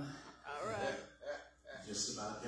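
A man speaking into a microphone in short phrases broken by pauses.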